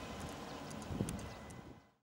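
A tractor with a mower attachment running some way off: an uneven low knocking with a few sharp clicks about a second in. The sound fades out near the end.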